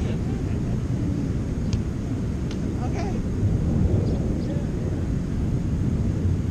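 Steady low rumble of beach wind and surf on the microphone, with faint distant voices and a few short, high, faint chirps or clicks.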